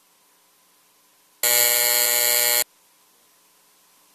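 Electronic buzzer sounding once for a little over a second, a steady flat buzz that starts and stops abruptly: the signal that closes an electronic vote.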